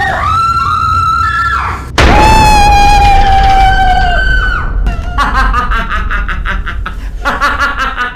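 Two long, loud screams, the second starting abruptly about two seconds in and held for about two seconds, followed from about five seconds by rapid, pulsing laughter.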